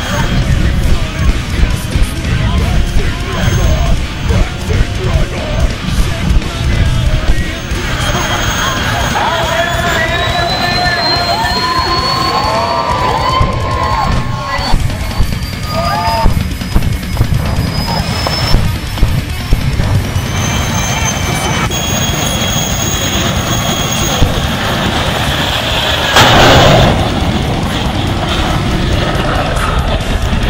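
A jet dragster's jet engine running loud with its afterburner lit, with irregular sharp bangs in the first several seconds. A thin high whine climbs slowly in pitch through the middle, and a louder rush comes near the end.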